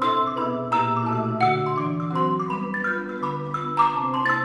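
Xylophone playing a quick ragtime melody of sharply struck notes over marimba accompaniment, with long low marimba notes held underneath.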